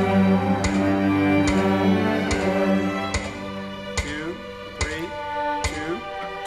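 Cello playing sustained bowed notes over other music, with a steady click a little under once a second. About three seconds in, the loud low cello notes stop and quieter music carries on with the clicks.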